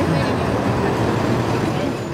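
Steady low rumble of a large motor vehicle's engine running at the curbside, with people talking indistinctly over it.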